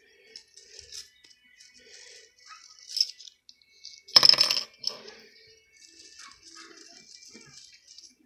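A small shiny red Christmas ornament handled in the hand, giving one loud, brief rattle about four seconds in, with faint rustling and light clicks around it.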